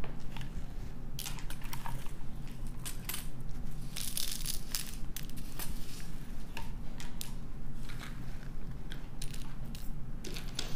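Faceted gemstone beads clicking and clattering against each other as they are moved about. The clicks come irregularly throughout, thickest in a short burst about four seconds in, over a steady low hum.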